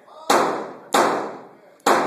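Three pistol shots fired in quick succession, under a second apart, each followed by a long echo off the concrete walls and ceiling of an enclosed range.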